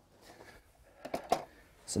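Quiet room tone with a few faint short sounds about a second in, then a man starts speaking at the very end.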